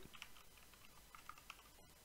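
Faint computer keyboard typing: a few soft, scattered keystrokes.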